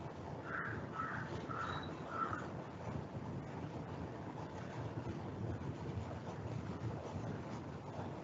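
Steady background noise picked up by the presenter's microphone, with four short calls in quick succession, about half a second apart, in the first two and a half seconds.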